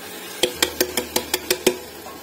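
Stainless steel bowl knocked quickly against a steel kadhai to shake out the last cooked moong beans: about eight sharp metallic clinks in a row, a little over five a second, each with a brief ring.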